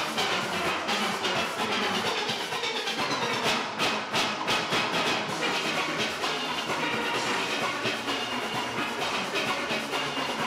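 Steel orchestra playing: many steel pans struck in quick succession, with sharper percussion strokes standing out in the middle of the passage.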